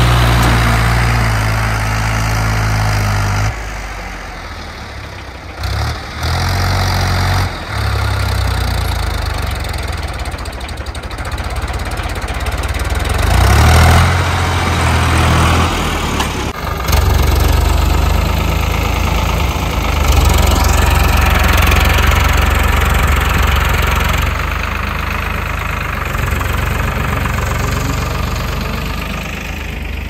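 Ford 3600 tractor's three-cylinder diesel engine running while it works a rear blade through soil. Its pitch and loudness rise and fall several times as the load and throttle change.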